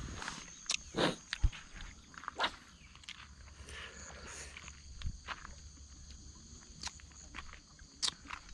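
Footsteps on dry, leaf-littered dirt: a few uneven crunching steps and scuffs, the loudest about a second in.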